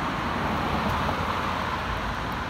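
Steady road traffic noise from ordinary cars passing on a city street: even engine and tyre noise with no single loud vehicle standing out.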